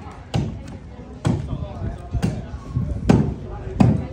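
Axes biting into wooden logs in an underhand chop, two choppers swinging in turn: five heavy strikes, about one a second, the last two the loudest.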